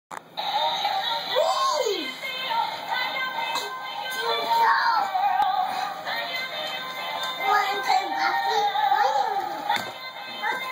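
Singing plush monkey toy playing an electronic song with a synthesized singing voice.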